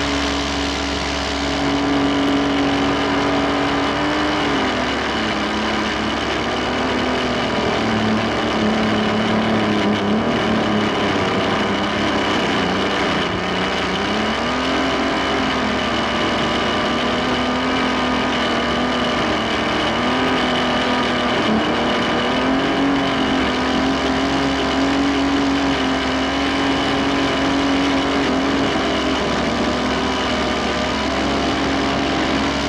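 Biplane's piston engine and propeller droning steadily in flight, the pitch dipping and rising a few times.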